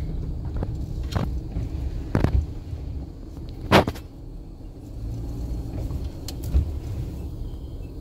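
Cab of a Ram ProMaster van rolling slowly: steady low engine and road rumble, with a few sharp knocks or rattles, the loudest about four seconds in.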